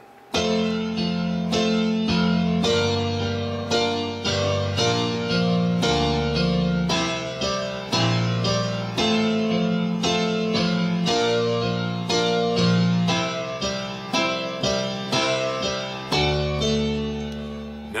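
Digital workstation keyboard with a piano sound playing a slow, even run of repeated chords: octave F chords in the right hand over a left-hand bass line in octave F's that steps to other notes.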